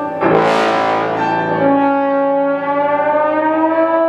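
Bass trombone and piano playing together. The trombone holds long notes, and a loud, bright piano chord crashes in about a quarter second in and rings away over about a second. Near the end the trombone's pitch slides slowly upward.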